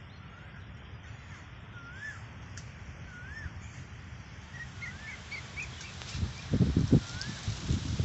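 A bird calling repeatedly outdoors, a short rising-and-falling whistled note every second or two, with a few brief higher chirps in the middle. Near the end, loud low rumbling bursts come in over it.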